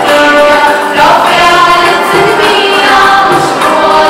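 Music: a group of voices singing a song together, with instrumental backing.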